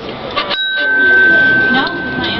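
A metal pipe chime on a playground chime panel struck once about half a second in, ringing a single clear tone that sustains for about two seconds.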